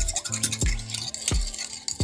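A metal spoon whisking eggs in a ceramic bowl, with rapid light clicking and scraping against the bowl. Background music plays over it, with held low notes and a steady beat.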